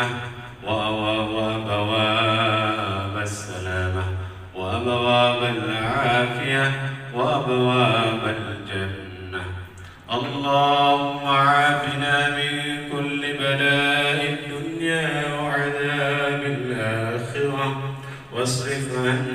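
A man's voice chanting a doa (Islamic prayer) through a microphone and loudspeakers, in long melodic phrases with drawn-out wavering notes. There are brief pauses for breath about four and ten seconds in.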